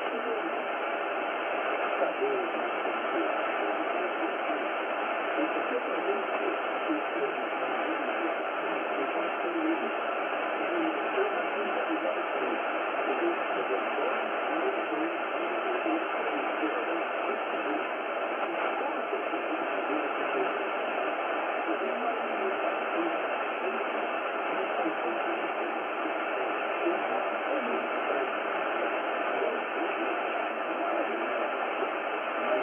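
Icom IC-R71E communications receiver tuned to 4885 kHz shortwave, playing a weak broadcast signal from Rádio Clube do Pará: a voice faintly heard through steady hiss and static, with everything above about 4 kHz cut off.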